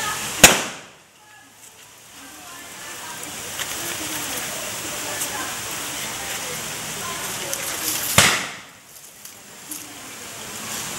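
Two loud, sharp bangs, one about half a second in and one about eight seconds in, with faint voices and a steady hiss between them.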